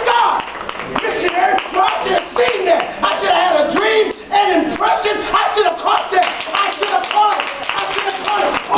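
A man's loud, excited voice with repeated hand claps over it.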